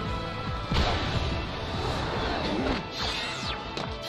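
Anime action soundtrack: a sudden crash about a second in, followed by further smashing and impact sound effects over background music.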